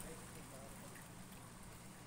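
Near silence: faint, steady background hiss with no distinct event.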